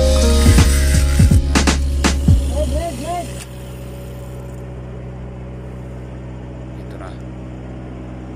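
Angle grinder dressing a pipe weld, mixed with music and animation sound effects, until it stops about three and a half seconds in; after that a steady low mechanical hum.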